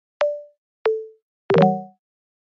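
Sparse plucked plop-like notes from light background music: a short higher note, a short lower note, then a fuller chord, each starting sharply and dying away quickly, with silence between them.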